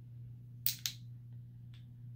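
Two sharp clicks about a fifth of a second apart as small plastic-and-metal travel perfume spray bottles are handled in the hands, over a steady low room hum.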